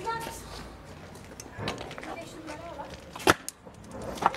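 Faint children's voices, with a single sharp click about three seconds in.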